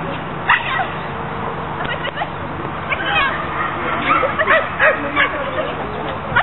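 A small dog barking in short, high yips, repeated several times and coming more often in the second half.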